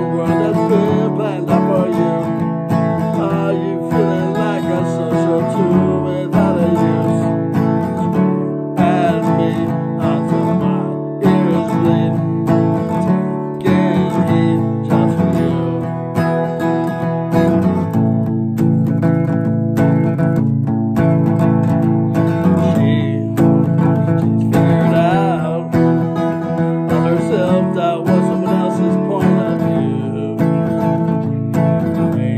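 Acoustic guitar strummed in a steady rhythm, playing the chords of a punk-rock song.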